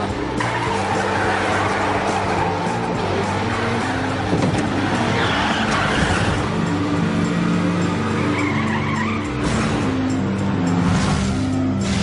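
Animated race-car sound effects: engines running and tyres skidding and squealing, over background music with held, stepping low notes.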